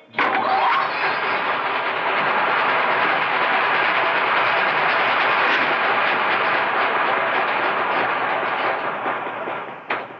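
Electric grain-grinding mill switched on and running: a loud, steady clattering mechanical noise that starts suddenly and fades away near the end.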